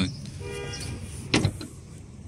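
A faint, short car-horn toot, followed about one and a half seconds in by the rear door of a Nissan Sentra being shut with a single loud thud.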